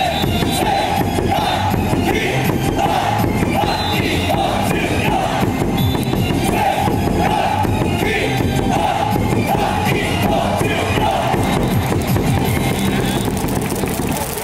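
KIA Tigers' baseball lineup cheer song played loudly over stadium speakers, with a crowd chanting along.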